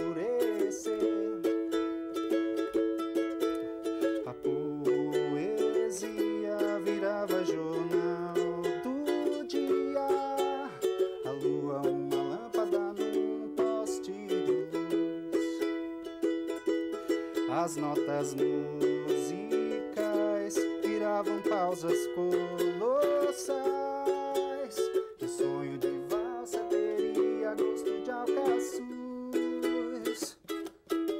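Ukulele played solo, chords strummed in a steady rhythm with picked melody notes over them, in an instrumental passage of a pop song.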